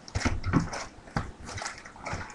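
A cardboard trading-card box and wrapped card packs being handled, making irregular rustles and light taps.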